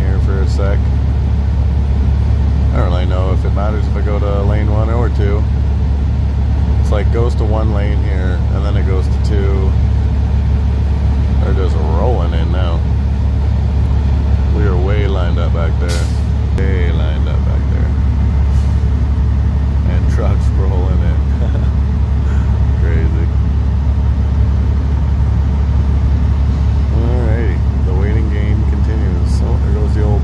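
Semi truck's heavy diesel engine idling steadily, heard from inside the cab as a low drone. Indistinct voices come and go over it, and there is one sharp click about halfway through.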